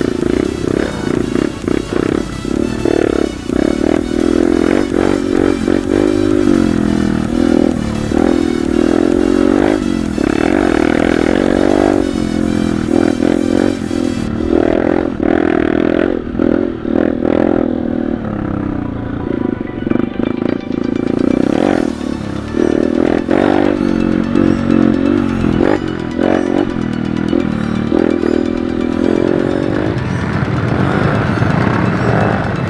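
Background music laid over a trail motorcycle's engine, which revs up and down repeatedly as it rides a rough dirt track.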